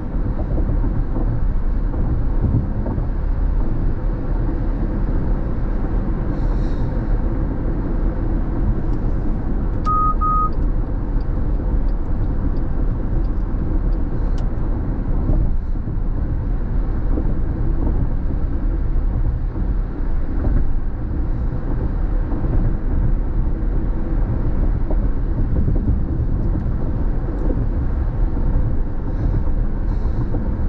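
Steady road and tyre noise heard inside a car's cabin while driving on a freeway. About ten seconds in there are two short high beeps in quick succession.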